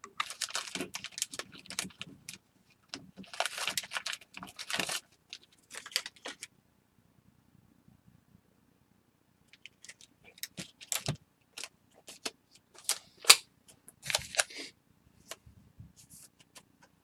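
Plastic card holder and foil pack wrapper crinkling and rustling as they are handled, with sharp clicks. The sounds come in irregular clusters, with a pause of a few seconds in the middle.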